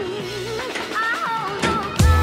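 Music: a lone wavering melody line that slides between notes, with fuller music and a bass line coming in right at the end.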